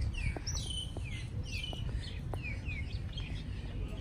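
Birds calling: a run of short chirps that slide downward in pitch, about two a second, over a steady low rumble.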